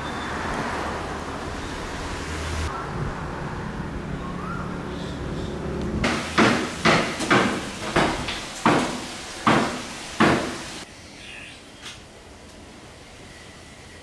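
A run of about eight hammer blows, irregular and roughly half a second apart, each with a brief ring, then stopping. Steady background noise comes before them.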